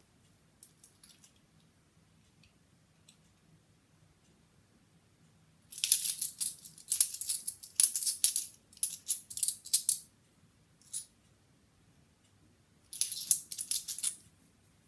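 Bimetallic £2 coins clinking against each other in the hand as they are slid off a stack one by one. Quiet at first, then a run of rapid clinks for about four seconds, a single clink, and another quick run near the end.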